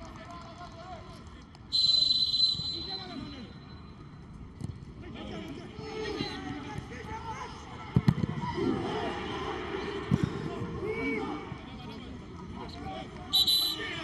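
A referee's whistle blows a short, shrill blast about two seconds in and again near the end. Between the blasts, players shout on the pitch and the ball is struck hard twice.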